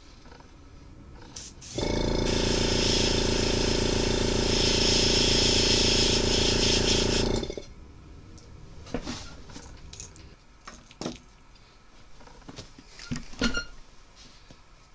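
An airbrush compressor starts about two seconds in and runs for about five and a half seconds, its motor hum under the hiss of air and paint spraying from the airbrush as the kill dot goes onto a crankbait through a cardboard stencil. A few light clicks and knocks follow, the sharpest near the end.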